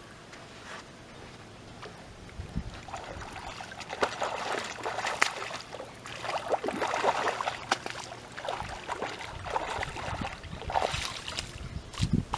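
A hooked carp thrashing at the surface in shallow water near the bank, splashing in repeated bursts from about three seconds in until it is drawn up onto the sand.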